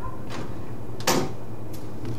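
A few sharp plastic clicks, the loudest about a second in, as a modem router's power lead is plugged in and the unit is switched on, over a steady low hum.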